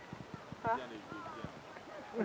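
People's voices talking, with a short louder vocal sound just under a second in, and a few faint sharp clicks or taps in the first second and a half.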